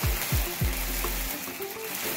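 A sparkler candle fizzing and crackling steadily, over background music with a deep bass beat.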